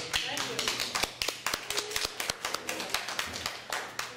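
A small group of people applauding, a quick run of separate hand claps that thins out near the end, with a few voices saying thank you underneath.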